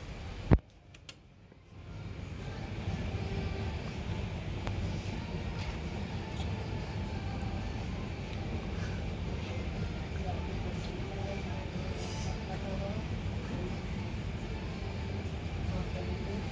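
A 2000s Bonfedi roped hydraulic elevator running with its doors shut, the car travelling between floors. A sharp click comes about half a second in, then a steady low running noise settles in from about two seconds on.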